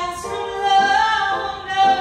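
A woman singing a soul/R&B song live, holding and bending sustained notes, over a light keyboard accompaniment.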